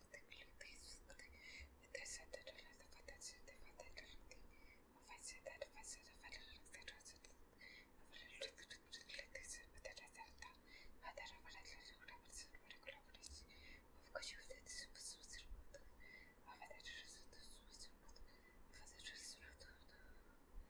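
Faint whispering in short breathy phrases.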